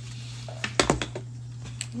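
Handling noise from a sandwich held against the phone: a short cluster of sharp clicks and a thump just under a second in, over a steady low hum.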